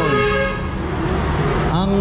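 A vehicle horn sounding one steady held note that ends about half a second in, over a continuous low rumble of road traffic.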